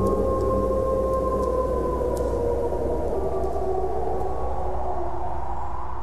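A chorus of wolves howling: several long, overlapping howls at different pitches, slowly sliding in pitch, over a low steady ambient drone.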